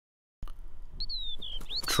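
Bird song starting about half a second in: clear, descending whistled notes from about a second in, over scattered light clicks.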